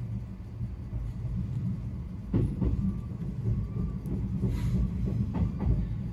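Izukyu 2100 series electric train heard from inside the front car: a steady low rumble of the running gear, with several irregular wheel clacks from about two seconds in as it rolls over rail joints and pointwork while departing the station.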